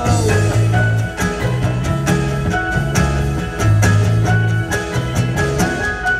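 A live band playing an instrumental passage on keyboard, acoustic guitar and electric guitar, with held bass notes and a regular percussive beat.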